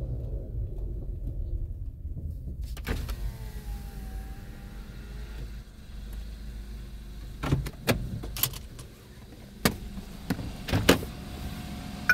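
A car engine idling with a low rumble, while an electric power window motor runs for a couple of seconds, lowering the side window. Four sharp clicks follow in the second half.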